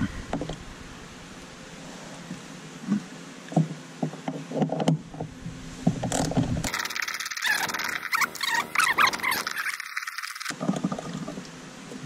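Socket wrench turning out the grab-handle bolts in a Toyota Tacoma cab: scattered clicks at first, then a few seconds of rapid, continuous clicking that stops abruptly near the end.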